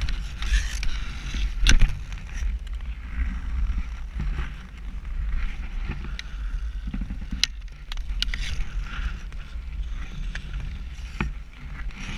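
Ice skate blades scraping and gliding over rough lake ice while a hockey stick handles a puck, with three sharp clicks of the stick striking the puck. A low rumble of wind on the microphone runs underneath.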